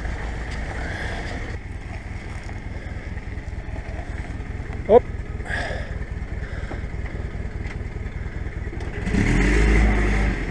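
Old Jeep's engine running slowly as it crawls over a rough dirt bump in four-wheel drive low range, getting louder under load about nine seconds in. A short shout of "hop!" halfway through.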